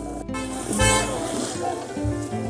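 Background music with steady bass notes, broken by a brief gap just after the start and then a short, loud horn-like blast about a second in.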